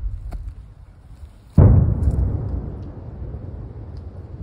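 A detonation: a sudden heavy boom about one and a half seconds in, its low rumble rolling away over the following two seconds.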